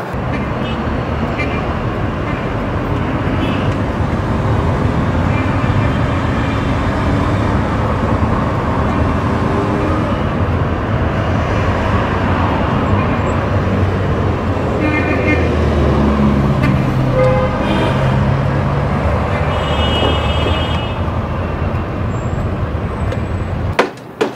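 Street traffic heard from inside a moving car: a steady road rumble, with car horns sounding now and then. It cuts off suddenly near the end.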